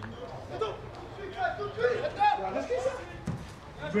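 Indistinct voices calling out and talking across an open football pitch, with a dull thump a little after three seconds in.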